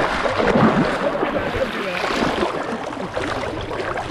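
Shallow seawater sloshing and splashing right at a camera held at the surface, with gurgles and small splashes throughout, as a hooked tarpon is handled alongside.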